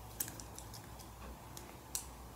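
A few light, sharp clicks from makeup brushes being handled, their handles knocking together. The loudest click comes near the end.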